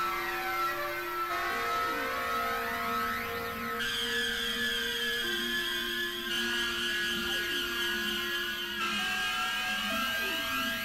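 Novation Supernova II synthesizer playing a sustained drone of held tones that shift to new pitches several times, overlaid with faint rising and falling sweeps from effects processing.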